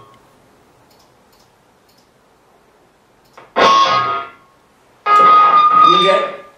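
Electric guitar played through Amplitube 2's Mesa/Boogie amp model with the reverb switched off, heard over studio monitors. After a few seconds of faint hiss, one chord is struck and dies away within about a second. A second chord then rings and is held with one strong sustained note.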